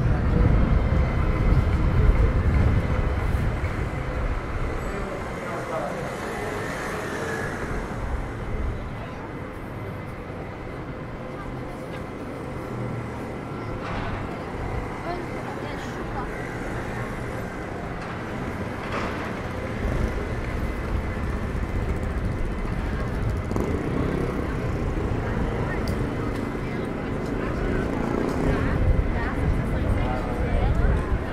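Busy city street ambience: passers-by talking and road traffic, with a louder low rumble in the first few seconds.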